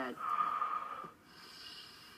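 A man drawing a loud, deep breath that lasts under a second, followed by a quieter breath out.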